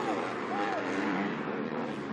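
MX2 motocross bike engines running on the track, their pitch rising and falling as the riders work the throttle, over a steady mix of engine noise.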